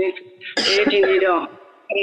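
A woman's voice reciting on a fairly level, chant-like pitch. There is a short breathy hiss about half a second in, and pauses near the start and the end.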